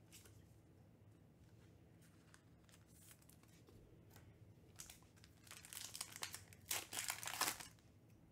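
Foil wrapper of a Panini Spectra football card pack crinkling as it is picked up and torn open, the noise starting about five seconds in and loudest near the end.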